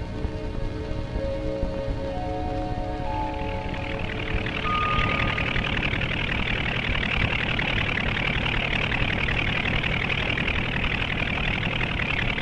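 A few closing notes of music fade out. From about three seconds in, a helicopter hovering overhead makes a steady, even engine and rotor noise.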